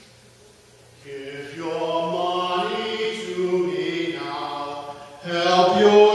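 A man singing solo in long, held notes, coming in about a second in after a quiet moment. He breaks briefly about five seconds in, then carries on louder.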